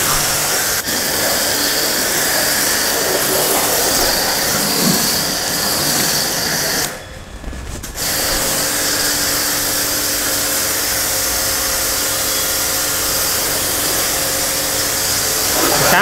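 Eurofine electric pressure washer running, its pump humming under the steady hiss of foam spraying from a foam-cannon bottle on the gun. About seven seconds in the spray stops for about a second, then starts again.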